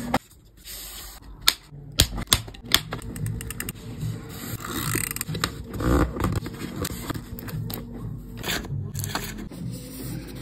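Stiff card packaging being folded and pressed flat on a desk: a few crisp clicks and taps of the card, then a stretch of rustling paper scraping in the middle, then more clicks near the end. Soft background music plays underneath.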